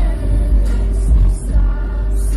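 Music playing with two women singing along, over the low rumble of a moving car's cabin.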